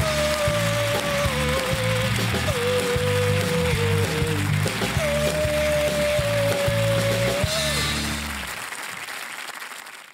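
Heavy metal band playing, the lead singer holding long high notes over driving bass and drums, with some applause; the music fades out about eight seconds in.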